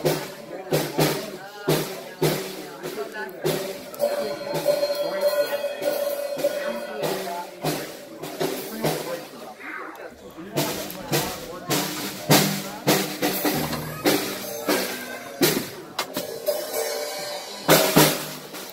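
A young child playing an acoustic Pearl drum kit: uneven, loosely timed strikes on the drums and cymbals, the drums ringing between hits.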